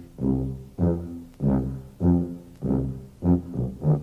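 Sousaphone playing a line of short, separate low notes, about two a second, as the brass lead-in to a children's theme song.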